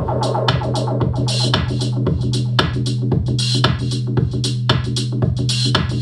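Electronic music with a fast, steady percussive beat, about four hits a second, over a held low bass note that steps up in pitch at the start.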